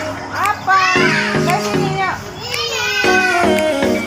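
Children's high-pitched voices, shouting and squealing in sweeping rises and falls, over music with a steady run of held notes.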